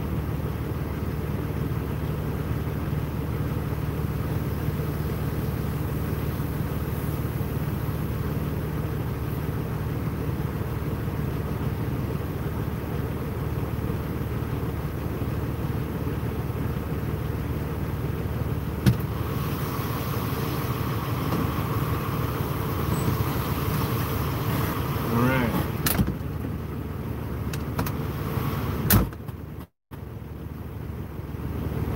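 A vehicle engine idling steadily, heard from inside the cab. A few sharp clicks come in the second half.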